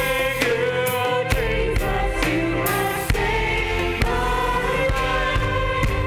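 Live worship song: women's voices singing together into microphones over band accompaniment, the lyrics "it has washed me white… you have saved my life".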